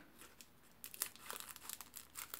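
Scissors snipping through a foil trading-card booster pack wrapper, with faint crinkling of the foil. The short crackling snips begin about a second in.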